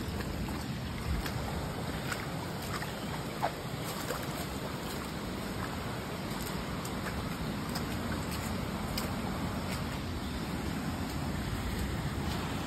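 Steady rushing wind noise buffeting a handheld phone microphone, with a few faint scattered clicks of footsteps on a wet, stony trail.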